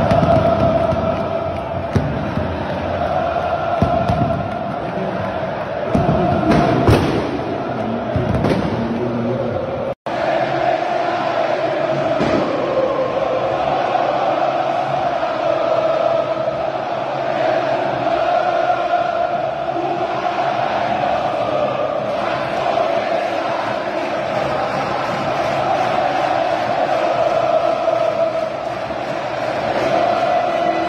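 A large stadium crowd of Flamengo supporters singing a chant together, many voices in unison and steady throughout. The sound drops out for an instant about ten seconds in, where one piece of footage cuts to another.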